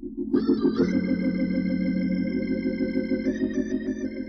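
Solo organ playing slow, sustained hymn chords. It swells louder with bright high notes added about half a second in, the held notes wavering quickly, and the chord shifts a little past three seconds in.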